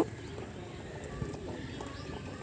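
Quiet outdoor background noise: a low, even hush with one faint soft knock about a second in.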